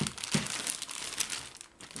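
Thin clear plastic zip-lock bag crinkling and rustling as hands rummage in it and pull a pair of slides out. The crackling is irregular and dies away briefly near the end.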